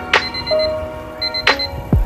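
Rapid digital alarm-clock beeping, in two short bursts, laid over background music. The music has a sharp snap about every second and a half, and a deep falling boom near the end.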